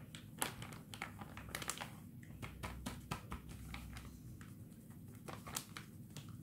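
Paper packet crinkling and rustling in a gloved hand as plaster of Paris powder is shaken out of it, with many small scattered clicks and crackles.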